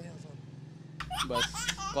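A short pause with a faint steady hum in the background, then about a second in a man's voice comes in, laughing and starting to speak, over a low rumble.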